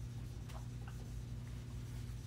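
Dry-erase marker writing on a whiteboard: a few faint, short strokes of the tip against the board over a steady low hum.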